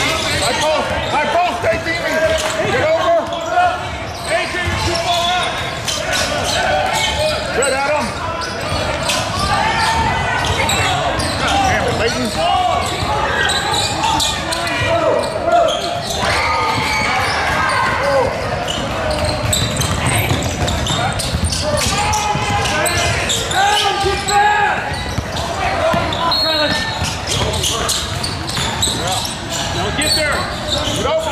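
Basketball game in a gym hall: a basketball bouncing on the hardwood floor as it is dribbled, under voices calling out across the court.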